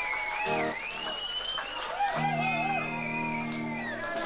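Live rock band music: electric guitar holding long, high, wavering notes with pitch bends, and a low held chord coming in about two seconds in.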